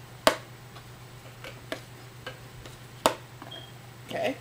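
Magnetic lid of a small gift box snapping shut against its magnet: two sharp clicks about three seconds apart, with lighter clicks and taps on the box between.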